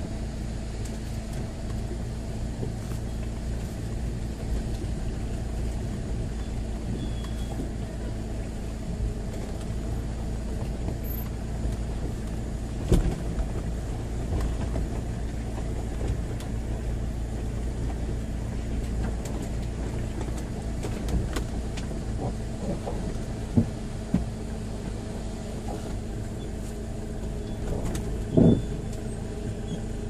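Land Rover Freelander's engine running steadily at low speed, heard from inside the cab as it crawls over a rocky off-road track, with a few short knocks along the way.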